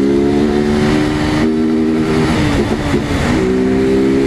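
Motorcycle engine running at steady revs while riding, with wind rush on the microphone. The even engine note breaks up for about a second past the middle, then comes back at the same pitch.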